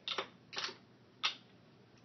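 Three short, sharp clicks, roughly half a second apart.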